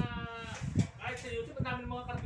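A long drawn-out vocal call, its pitch slowly sinking, then a second drawn-out call near the end, with a couple of sharp knocks in between.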